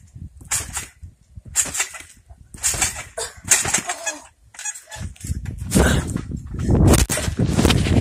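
Trampoline being jumped on: a short burst of spring and mat noise about once a second. In the last few seconds, loud rumbling from the camera being handled.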